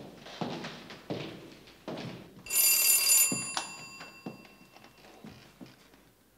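Footsteps on a hard floor, then an electric doorbell ringing once for under a second about two and a half seconds in, its metallic tone trailing off, followed by a single thud.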